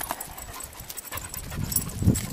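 Hunting dog panting.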